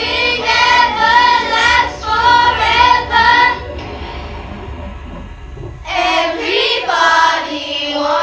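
A child singing in short phrases, stopping for about two seconds midway before starting again.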